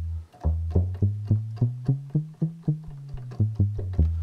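Sequential Pro 3 synthesizer playing a plucky, bass-guitar-like synth bass line: short decaying low notes about three or four a second, moving up and down in pitch.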